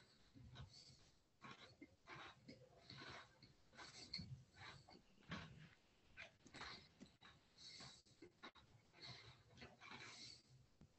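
Faint chewing and mouth noises from someone eating near a video-call microphone: soft, irregular clicks and smacks.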